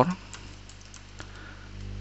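Computer keyboard being typed on: a few light key clicks over a steady low electrical hum.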